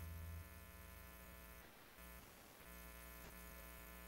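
Near silence with a faint steady electrical hum, slightly louder for the first half second.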